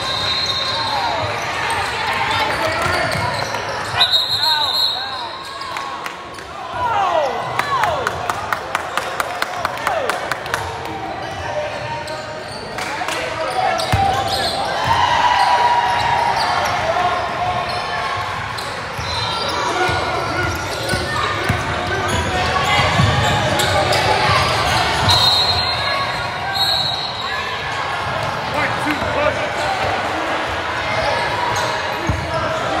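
Basketball game in a large gym: a ball bouncing on the hardwood court, sneakers squeaking and players and spectators calling out, with a run of quick even taps about eight seconds in. A short steady high whistle-like tone sounds near the start, again about four seconds in, and twice near the end.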